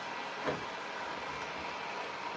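Electric heat gun blowing steadily while drying paint on a piece of furniture, a constant rushing hiss. One light knock comes about half a second in.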